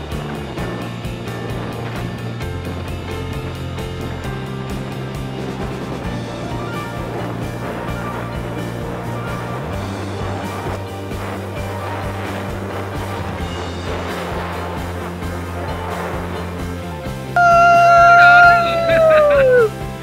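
Background music with steady low chords that change every few seconds. Near the end, a much louder held call from a person cuts in, its pitch falling as it ends.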